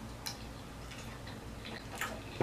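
A person chewing a mouthful of pizza: faint, irregular clicks of the mouth.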